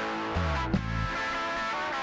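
Live band playing an upbeat song: electric guitars and bass guitar over a drum kit. A low note slides down about half a second in, and a sharp drum hit stands out just under a second in.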